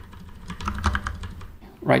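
Computer keyboard keys being tapped: a short run of separate keystrokes.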